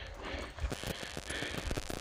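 Handling noise from a handheld camera being moved about: a low rumble with many small, irregular clicks and rustles.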